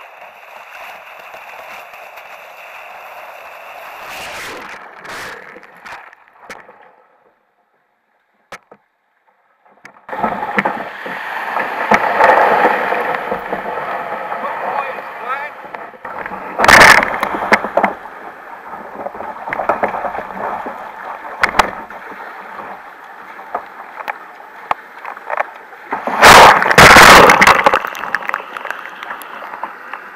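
Sea water sloshing and splashing around a kayak as it is paddled through choppy water and surf, with loud splashes from breaking waves just past the middle and again near the end. The sound cuts out briefly about a quarter of the way in.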